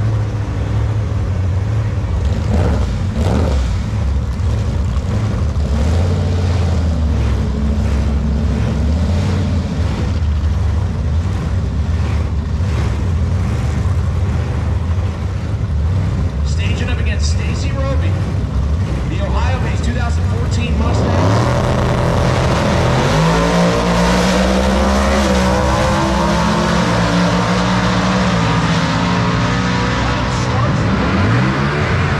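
Ford Mustang drag cars idling with a deep, steady rumble at the starting line. About 21 seconds in, the engines go to full throttle as the cars launch down the strip, their pitch climbing, dropping and climbing again as they shift through the gears.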